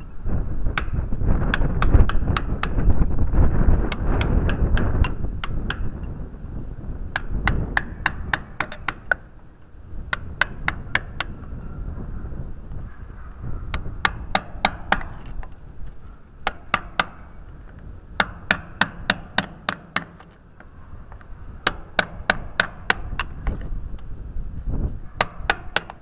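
Hand hammer striking a steel chisel in short bursts of quick blows, each blow a sharp metallic clink with a brief ring, as the chisel chips at the hard surface. A low rumble sits underneath, loudest in the first few seconds.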